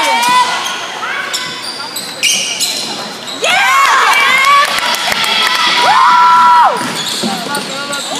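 Basketball game in a gymnasium: the ball bouncing on the hardwood floor and sneakers squeaking, with spectators shouting throughout and one long held shout near the end.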